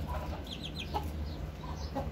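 Chickens clucking quietly, with a few short high peeps about half a second in, over a low steady hum.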